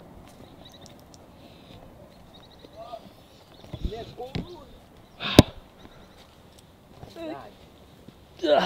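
Footsteps on a dirt trail through brush, with brief indistinct voices and one sharp click about five seconds in.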